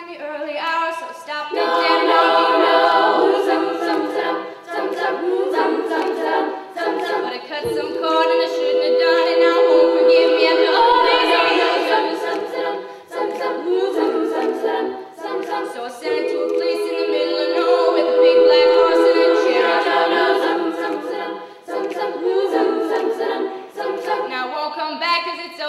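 Female a cappella choir singing without accompaniment: a lead singer over close backing harmonies, in long swelling phrases with held chords.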